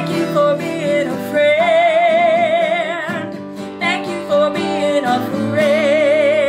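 Strummed Martin D-28 acoustic guitar accompanying a woman singing long held notes with a wide vibrato, one about a second and a half in and another starting near the end.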